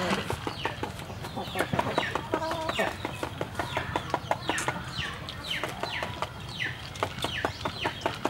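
Chickens calling: clucks and a run of short chirps that fall in pitch, coming two or three a second in the second half.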